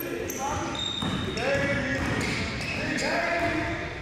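Gym ambience: basketballs bouncing and indistinct voices echoing in a large hall.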